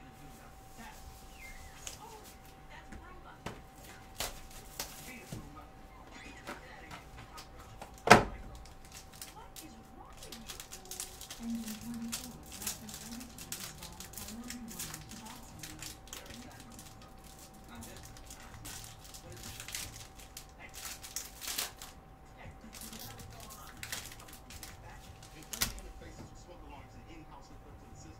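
Plastic shrink wrap on a trading-card hobby box being slit and torn open, with crackling and rustling and small clicks. A loud thump comes about 8 seconds in and a smaller one near the end, over a faint steady hum.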